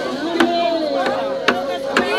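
A woman's voice holds a long, slowly falling sung note in a ceremonial chant, with sharp knocks about a second apart.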